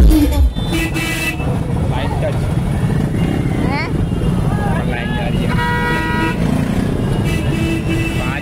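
Loud DJ-truck music with heavy bass cuts off about half a second in, leaving a busy street crowd: overlapping voices over idling motorcycle engines. A vehicle horn sounds for about a second near the middle, with shorter honks early on.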